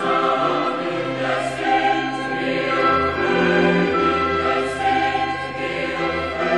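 Church choir singing a sacred hymn in slow, long-held chords.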